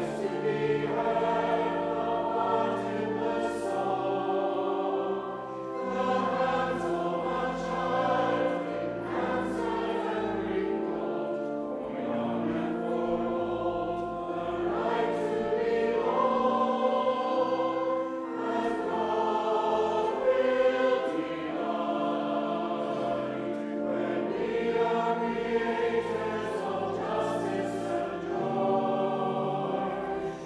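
Church choir and congregation singing a hymn, with steady sustained organ chords beneath the voices.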